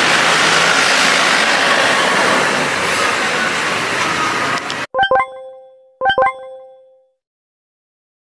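Loud, steady outdoor rushing noise, traffic-like, that cuts off abruptly a little before five seconds in. It is followed by two bright double chimes, an edited-in sound effect, about a second apart, each ringing out and fading to silence.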